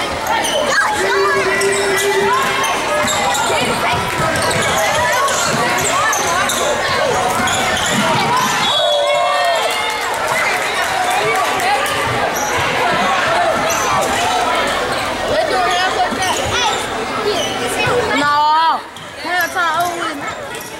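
A basketball bouncing on a hardwood gym floor during play, under constant voices and shouts from players and spectators that echo in the gym.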